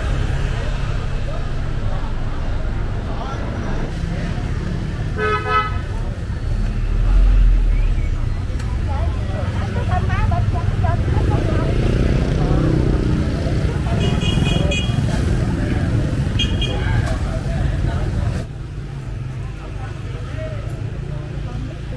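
Busy street traffic with a bus engine rumbling past, a vehicle horn sounding once about five seconds in, and two short, higher-pitched horn beeps later on, over the murmur of a crowd.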